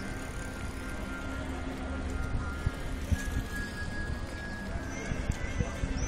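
Outdoor public-square ambience: faint music with sustained tones and distant voices, scattered light knocks, and short high bird chirps starting about five seconds in.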